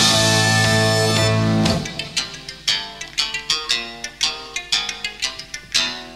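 Progressive rock band playing live: a loud, sustained full-band chord cuts off just under two seconds in, followed by a sparse run of short, sharply picked notes.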